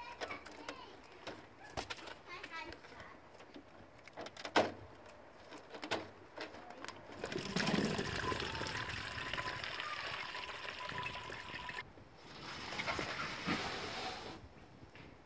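Water pouring in a steady stream out of an upturned plastic drinker bottle onto a drain, for about four seconds from around the middle, after a few scattered knocks and clicks of handling.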